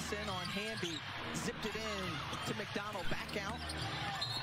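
Televised WNBA game audio playing faintly: a commentator talking over arena sound, with a basketball bouncing on the court.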